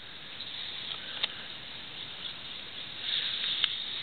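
Rustling and scraping handling noise, growing a little louder near the end, with a few light clicks.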